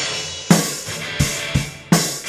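Drum kit played live: kick drum beats under crash cymbals that ring on, with fresh cymbal crashes about a quarter of the way in and again near the end.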